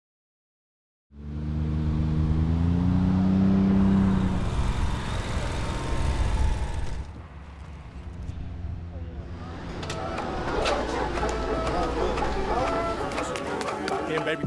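A low engine-like rumble starts suddenly about a second in, with a tone that rises in pitch over the next few seconds like a motor vehicle accelerating. From about the middle on it gives way to men's voices talking and scattered sharp clicks and knocks.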